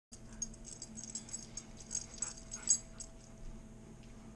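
A husky vocalizing, with a quick run of sharp little clicks over the first three seconds.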